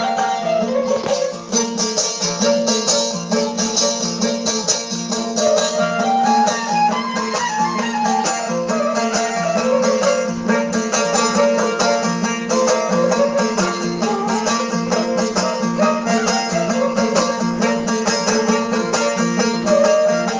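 Balochi instrumental folk music: a suroz (bowed fiddle) plays a melody that steps up and down over a steady drone and rhythmic plucked-string strokes.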